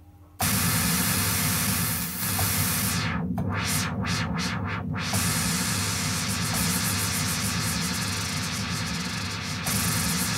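Moog Rogue synthesizer's noise generator sounding a loud, steady white-noise hiss, switched in suddenly just after the start with the noise fader fully up. About three seconds in, the highs drop out and come back four times in quick succession, so the hiss repeatedly dulls and brightens.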